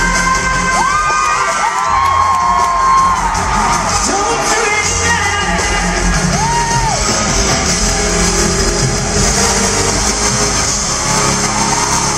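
Live pop-rock band and vocals played loud through an arena PA, recorded from the audience, with fans whooping and screaming over the music.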